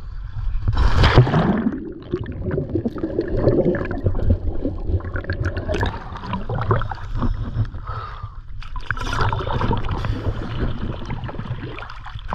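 Scuba diver's back-roll entry into the sea: a splash about a second in, then water gurgling and sloshing around the camera at the waterline.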